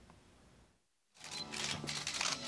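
Silence for about the first second, then the sound of a formal ceremony comes in: camera shutters clicking over faint music.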